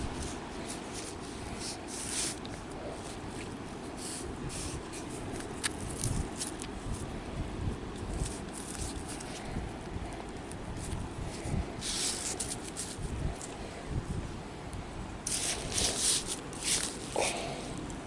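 Cord rustling and scraping as it is handled and knotted around a tree trunk, over a steady low rumble. The rustles come in short, scattered bursts, with a louder run of them near the end.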